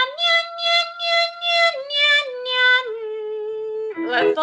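A woman's voice singing a 'nya nya nya' vocal exercise: a run of short repeated syllables on a high note that steps down twice, ending on a held lower note of about a second.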